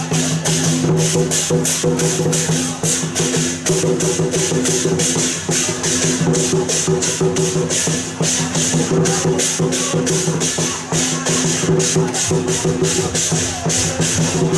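Dragon-dance percussion band playing: drum and cymbals beating a fast, steady rhythm of about five strokes a second, with a steady held note underneath.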